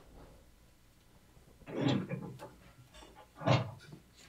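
A man clearing his throat close to the microphone, twice: once about two seconds in and again, louder, near the end.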